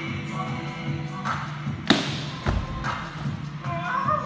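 A single loud thud about two seconds in as feet land on top of a tall stack of plyometric boxes in a box jump, followed by a duller low thump, over background music.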